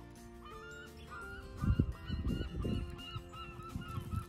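A rapid run of short bird calls, about three or four a second, over steady background music, with low rumbles in the middle.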